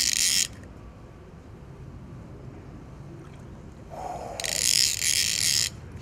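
Fly reel's click ratchet buzzing as a hooked carp pulls line off. There are two bursts: one stops about half a second in, and a second, over a second long, comes about four and a half seconds in.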